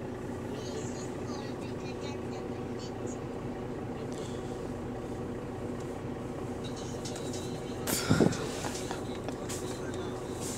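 Inside a moving bus: the drivetrain's steady hum, with several held tones, under faint passenger chatter. A loud knock or jolt about eight seconds in.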